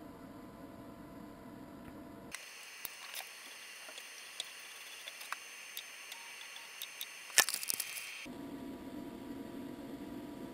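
Faint scattered clicks and handling noise from hands working at a small 3D printer while threading filament and pressing its controls, with one sharper click about seven seconds in. The steady low room hum drops away for most of the middle, leaving a faint hiss.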